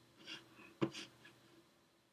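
Faint breaths at the microphone and one short sharp click a little before a second in, then it fades to near silence.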